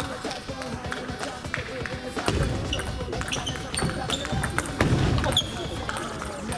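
Table tennis rally: the ball clicking sharply off bats and the table, many strikes in quick succession. A couple of heavier low thumps come about two and five seconds in, with brief shoe squeaks on the wooden floor, over the clicks and chatter of a busy hall.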